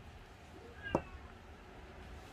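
A single brief, high, meow-like animal call about a second in, over faint room noise.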